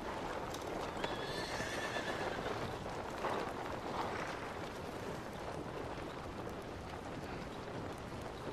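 Horses in an outdoor film soundtrack: a faint horse whinny about a second in, then a couple of soft breathy swells, over a steady wash of wind and open-air ambience.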